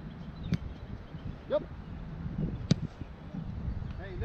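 Soccer ball struck twice, a light sharp knock about half a second in and a louder one about two-thirds of the way through, over a steady low wind rumble on the microphone.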